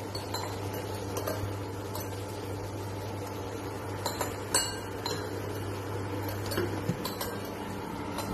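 Induction cooker running with a steady low hum. Around the middle, a few sharp clinks of the glass lid against the steel pot, the loudest about four and a half seconds in.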